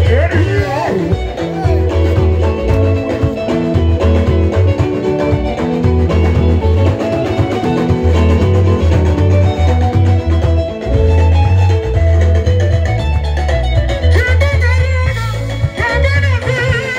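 Live band dance music with a heavy bass line and repeating plucked guitar lines over drums; a voice sings briefly at the start and comes back near the end.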